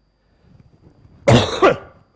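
A man coughing: a short, loud double cough about a second and a half in.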